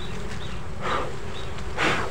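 Swarm of honeybees buzzing around an exposed comb that is being handled. Two brief scraping swishes come about a second apart, the second near the end and louder.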